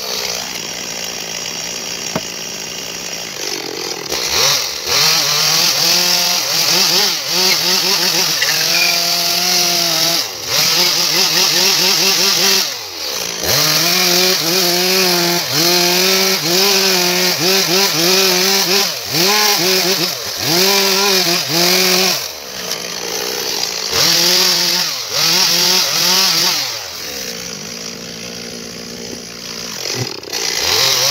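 Two-stroke gasoline chainsaw cutting into a wooden log, its engine note dropping under load in each cut and climbing back as the bar frees, over and over. Near the end it runs more quietly and steadily.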